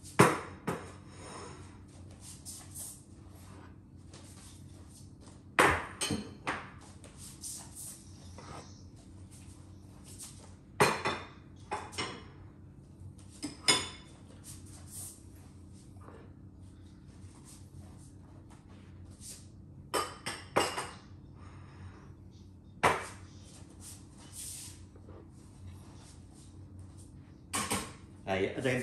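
Ceramic bowls and plates clinking and being set down on a hard surface, in scattered clusters of sharp clinks, over a faint steady hum.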